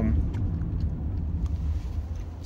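Car cabin noise while driving: a steady low rumble of engine and road, heard from inside the car.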